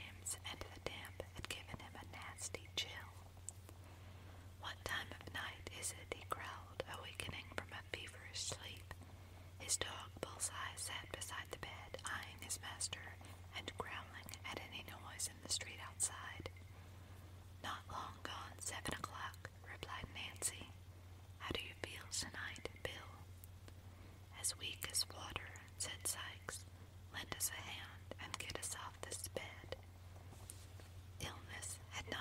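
A person whispering, reading the story aloud in soft phrases with short pauses, over a steady low hum.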